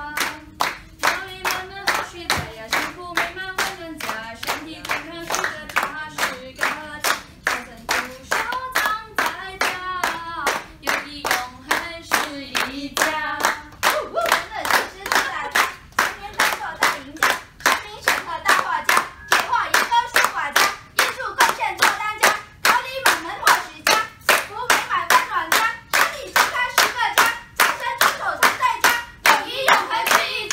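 A small group of people singing a Chinese song together while clapping along in a steady beat, about three claps a second. About halfway through, the singing shifts higher and more voices join in.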